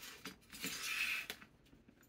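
Handling noise of a small metal sign with its wire hanger and chain being shifted on a cutting mat: a short scraping rustle with a few light metallic clicks, fading out past the middle.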